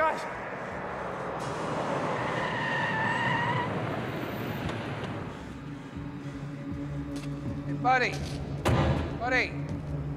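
A taxi cab pulls up fast with its tyres squealing as it brakes, then its engine idles with a steady low hum. A sharp thump comes near the end.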